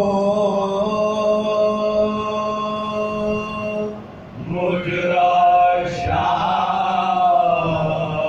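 Men's voices chanting an Urdu marsiya (elegy) together without instruments. One long note is held steady for about four seconds, the voices break off briefly, then a second phrase rises and falls.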